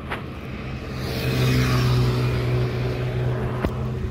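A motor vehicle passing close by on the road: a steady engine hum with tyre noise swells from about a second in, is loudest around two seconds, then eases off.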